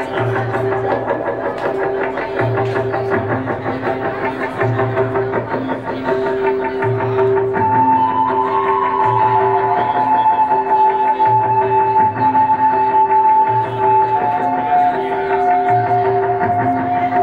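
Live band music: slow, sustained instrumental notes over a low bass line that changes note about every two seconds, with a high held melody line coming in about halfway through.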